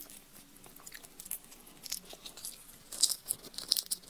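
Close-miked peeling of a raw red shrimp by hand: small crackling clicks of shell coming apart, denser about three seconds in as the shrimp reaches the mouth, with wet mouth and biting sounds.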